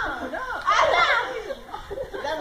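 Excited children's shouts and squeals during rough play, several high voices rising and falling.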